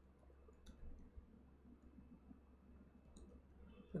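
Near silence: faint room tone with a few soft keyboard clicks as a file name is typed.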